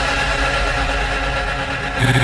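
Electronic dance music in a sustained passage: a steady synth drone over deep bass, its treble gradually fading away.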